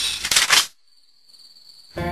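Crickets chirping steadily, with a loud rasping noise in two quick parts during the first second.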